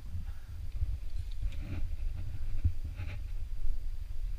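Low rumble of wind and movement on a head-mounted camera's microphone as a climber pulls onto the rock, with a couple of short breathy sounds, one about midway and one near three seconds in.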